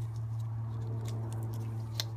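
Faint ticking and rubbing as a gloved hand presses and smooths soft epoxy sculpting putty on a wooden post, over a steady low hum.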